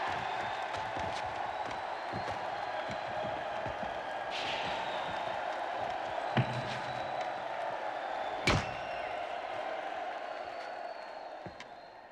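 A large crowd shouting and cheering steadily, cut by sharp impact blows from the bat fight, the two loudest about six and eight and a half seconds in. The crowd noise fades near the end.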